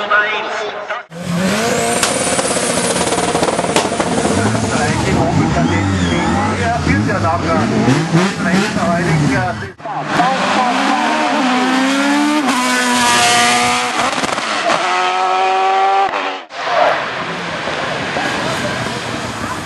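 Hill-climb race car engines at full throttle, one car after another: each revs hard, its pitch climbing and dropping through gear changes, and the sound breaks off suddenly twice as a new car takes over.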